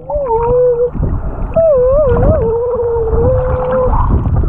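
A long, wavering hum-like tone heard underwater, in two stretches. It is held steady with a few up-and-down wobbles and has a short break about a second in, over the low rush of water.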